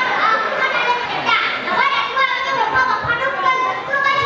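A young boy speaking continuously into a microphone, delivering a speech.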